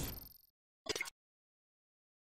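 Near silence: the tail of a man's spoken farewell dies away, a brief blip sounds about a second in, and then the sound cuts to dead silence.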